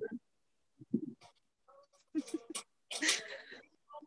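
Scattered brief voice sounds over a video call: short broken snatches of voices cut in and out by the call audio, with a short breathy burst about three seconds in.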